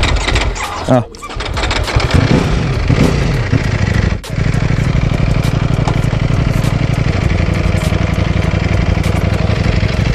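Ducati Panigale V4 S's V4 engine running at low revs with a steady, even pulse as the bike is put into first gear and pulls away slowly.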